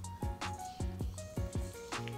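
Background music with a steady beat under held notes.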